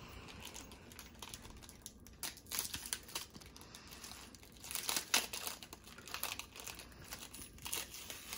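A Paqui One Chip Challenge pouch crinkling as it is torn open by hand, in irregular bursts about two and a half seconds in, around five seconds in (the loudest) and again near the end.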